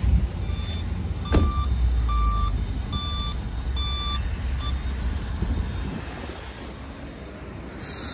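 Flatbed tow truck's reverse alarm beeping, about four beeps a second apart that stop about halfway through, over the low rumble of the truck's engine. One sharp knock sounds a little over a second in.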